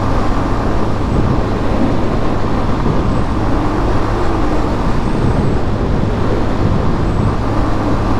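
Yamaha Fazer 250 motorcycle's single-cylinder engine running steadily at highway cruising speed, heard from the rider's seat under a steady rush of wind and road noise.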